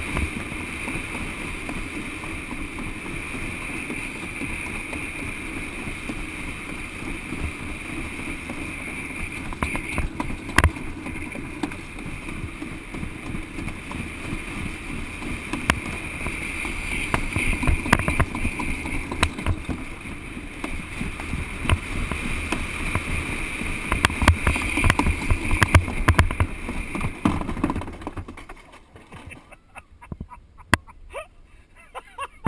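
Alpine slide sled running fast down a concrete trough: a steady rough rumbling scrape with many sharp knocks from the track's bumps, growing louder and busier in the second half. The sound dies away near the end as the sled slows to a stop at the bottom.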